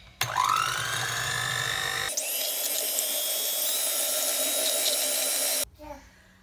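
Electric hand mixer beating eggs in a bowl. Its motor whine rises as it starts, jumps to a higher pitch about two seconds in, and cuts off shortly before the end.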